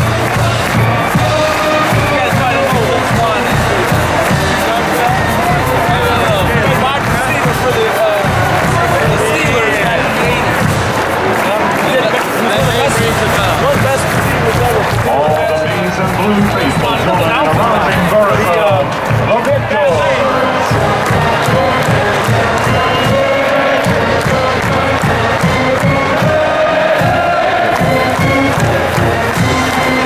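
Marching band of saxophones, trombones and sousaphones playing a march as it marches onto the field, with a large stadium crowd cheering under the music.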